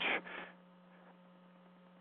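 A spoken word trails off in the first half-second. Then a faint, steady, low electrical hum fills the pause.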